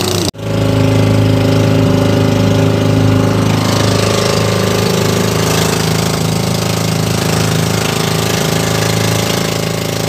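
Engine of a motorized outrigger bangka running steadily at a constant pitch under way at speed, with a rushing noise that fits water and wind passing the hull. A brief break comes just after the start.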